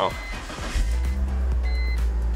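BMW E46 330Ci ZHP's 3.0-litre inline-six started with the key: a brief crank, then the engine catches about three-quarters of a second in and settles into a steady idle.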